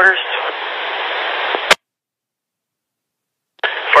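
Two-way fire dispatch radio: the end of a transmission, then steady open-channel static for under two seconds that cuts off with a click as the transmitter unkeys. Dead silence follows until another voice comes on the channel near the end.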